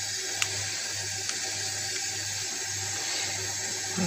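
Steady rush of running water, as from a tap into a sink, with a low hum beneath it and two faint clicks in the first second and a half.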